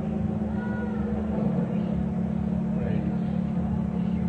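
Steady low hum of an old sermon tape recording, with faint scattered voices of the congregation murmuring in the hall.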